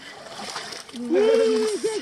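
Several people wading through shallow, muddy water, their legs splashing. About halfway through, a loud held shout from one of them, the loudest sound here, followed by more calling out.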